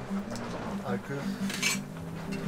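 A few light clinks of dishes and cutlery, the clearest near the end.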